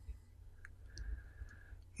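Quiet pause with a steady low hum and a few faint clicks.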